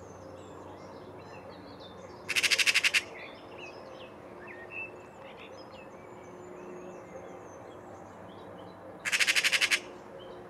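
Eurasian magpie giving its rattling chatter twice, each a rapid burst of harsh notes under a second long, one about two seconds in and one near the end: the alarm chatter magpies aim at a cat. Faint songbird chirps carry on underneath.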